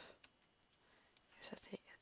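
Near silence in a pause of speech: a soft breath at the start, then a faint spoken "a" in the second half.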